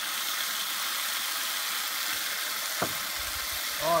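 Lemon-and-mustard dressing sizzling steadily on green beans in a hot cast-iron skillet, just after being poured into the pan. One sharp click partway through.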